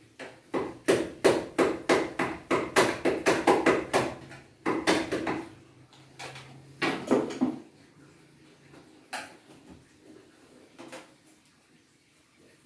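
A rapid series of sharp knocks of a metal tool struck against an aluminium door frame, about three a second, as the frame is worked loose for removal. The run of blows stops about four seconds in, followed by two short bursts of knocking and a few single knocks.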